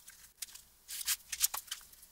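Paper and book-cover material handled by hand on a bench: a few short, faint rustles and ticks, most of them from about a second in.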